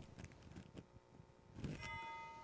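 Faint room quiet, then near the end a single metallic strike that rings on with several clear, steady tones.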